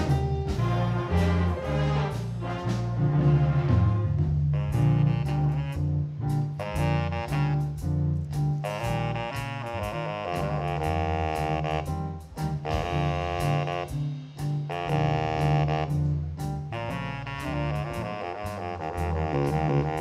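Jazz band playing a twelve-bar blues in B-flat, with a baritone saxophone soloing over a walking bass line, keyboard and drums with ride cymbal.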